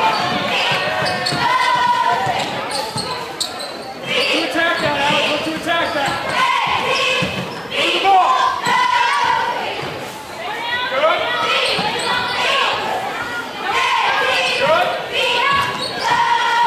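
Basketball game in a large gym: a basketball bouncing on the hardwood floor amid spectators' and players' voices calling and shouting, all echoing in the hall.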